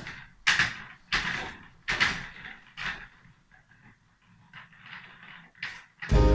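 A person's short, sharp breathy huffs, about four in the first three seconds, each fading quickly, then fainter scattered breaths.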